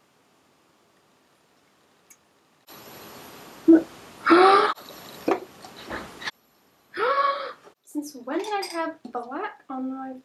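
A woman's voice: after a few seconds of near silence come several short, loud vocal sounds over a breathy hiss, then quick, speech-like sounds in the last two seconds.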